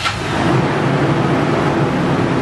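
Toyota 4Runner's engine just started, catching and running steadily at idle.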